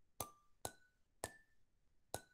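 Online spinner wheel ticking as it spins down: three short ticks, each with a brief ping, coming further apart each time as the wheel slows.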